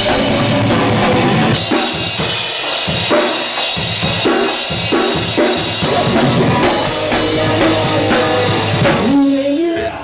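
Pop-punk band music with the drum kit to the fore. About two seconds in it thins out to regular drum hits, roughly two a second, under held pitched notes, then fills out again and drops away near the end.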